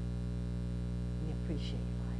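Steady low electrical mains hum with a stack of evenly spaced overtones, running unchanged under a pause in speech; one word is spoken near the end.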